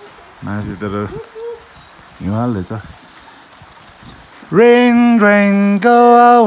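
A low voice chanting: two short rising-and-falling phrases in the first three seconds, then from about four and a half seconds in, loud long-held notes that step from one pitch to another.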